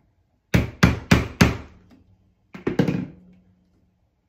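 Claw hammer tapping a laser-cut wooden piece down into its slots to seat it: four quick taps about half a second in, then a few more near the three-second mark.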